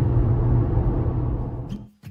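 Steady low drone of road and engine noise inside a moving car's cabin, fading out near the end as a strummed acoustic guitar comes in.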